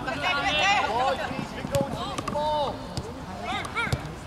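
Shouted calls across a football pitch, several voices in turn, with a couple of sharp thuds of a football being kicked, one about two seconds in and one near the end.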